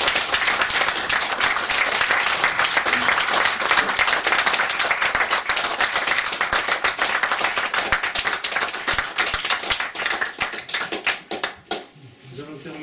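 A small audience applauding, dense steady clapping that thins to a few scattered claps near the end.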